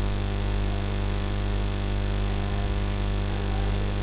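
Steady low electrical mains hum with a faint hiss under it.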